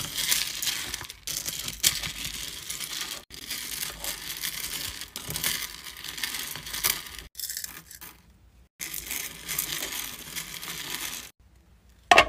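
Solid hard-wax beads rattling and scraping against a metal wax-warmer pot as a wooden spatula stirs them, with a few abrupt breaks.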